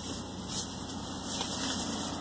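Plastic grocery bags crinkling in a few brief rustles as they are handled, over the steady low hum of a car engine idling.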